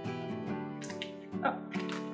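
Background acoustic guitar music plays steadily, with a few brief crinkles of a plastic packaging bag being handled.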